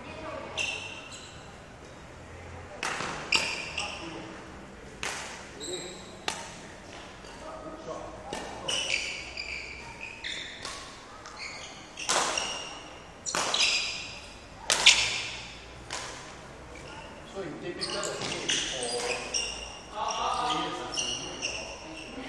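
Badminton racket strokes hitting shuttlecocks, sharp cracks about every one to two seconds, the loudest around the middle, with short high squeaks of court shoes on the hall floor. The hits echo in a large indoor hall.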